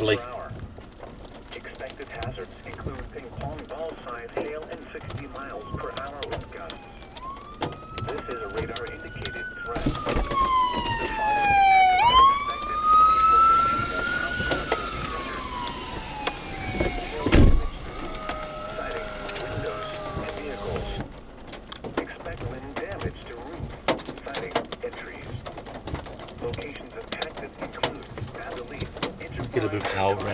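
A siren wailing, its pitch rising and falling in slow cycles of a few seconds, about three times from some seven seconds in until about twenty-one seconds, with a loud low thump in the middle of it.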